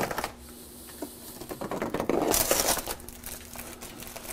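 Plastic wrap crinkling as it is peeled off a tray of thinly sliced beef, in a rustly stretch of about a second near the middle, after a brief clatter at the very start.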